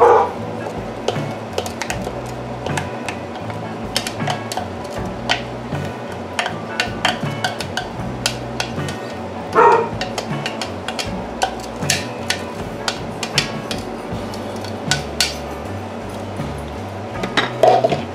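A plastic spatula scraping and tapping against a plastic chopper cup, knocking chopped onion, garlic and carrot into a bowl of crumbled cornbread: a steady run of light clicks and knocks.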